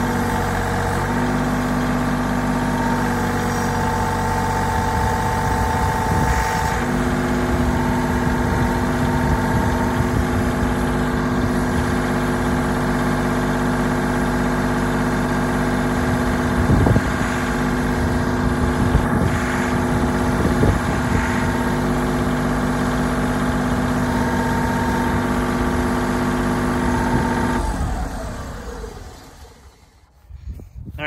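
Tractor diesel engine idling steadily, with a few short knocks in the second half as wooden blocks are set under the raised chute. The engine sound fades out near the end.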